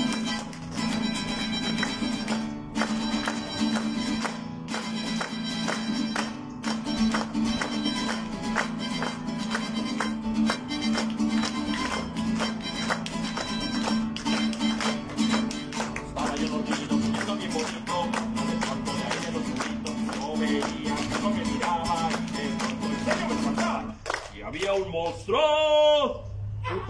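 Acoustic guitar strummed in a steady rhythm, playing a song's introduction; the strumming stops about two seconds before the end.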